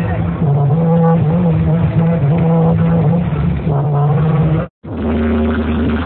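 Loud amplified music from a procession's DJ sound system, with a wavering melody over a steady low drone. It cuts out briefly about four and a half seconds in, then comes back as electronic dance music with heavy bass.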